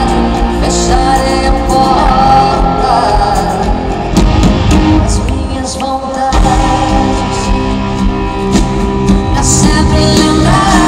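Live band music heard from the audience in a large arena, with sustained notes over a steady low end. The sound thins briefly about six seconds in, then the full band comes back in.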